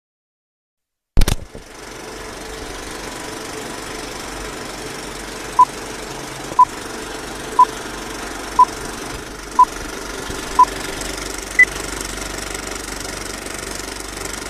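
Old film-leader countdown sound effect: a sharp click, then a steady film-projector rattle and hiss, with a short beep every second, six at one pitch and a seventh, higher beep to end the count.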